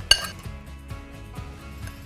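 A metal spoon clinks once against a glass bowl, a short ringing clink, as dressing is scraped out. A few faint taps follow over quiet background music.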